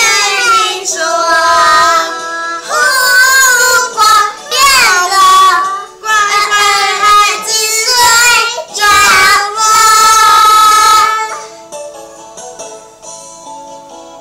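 Young children singing a song loudly in short phrases over an instrumental backing track. The singing stops about eleven seconds in, leaving the quieter accompaniment playing.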